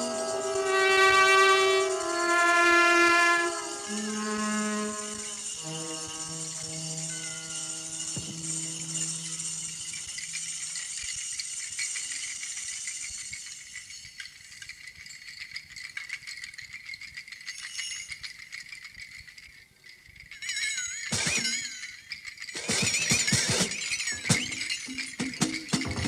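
Live jazz orchestra music: the ensemble holds long sustained chords for the first several seconds over a high cymbal shimmer, then thins to a quiet, sparse passage, and loose clattering percussion comes in near the end.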